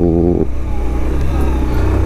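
Motorcycle engine running with a steady, low note while the bike rolls slowly along, heard from the rider's position.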